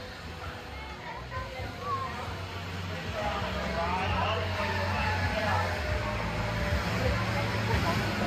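Kiddie airplane ride running: a steady low mechanical hum with scattered people's voices over it, growing a little louder about three seconds in.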